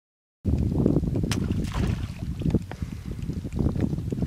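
Wind buffeting the microphone over open water, an uneven low rumble that starts abruptly about half a second in, with a few light clicks.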